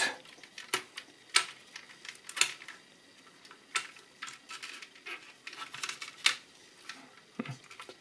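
Small, sharp plastic clicks and taps at irregular intervals as a gauge needle and its cap are pressed and clipped back onto the instrument cluster's needle shaft.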